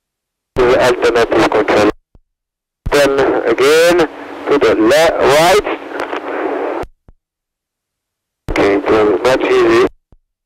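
A man's voice heard over a two-way radio in three short transmissions, each starting and cutting off abruptly, with dead silence between them; the middle one is the longest.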